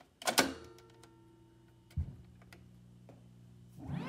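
An 8-track cartridge pushed into the Zenith console's 8-track deck, seating with a sharp clunk, followed by a faint steady hum and a few single clicks from the deck. Music starts from the speakers right at the end.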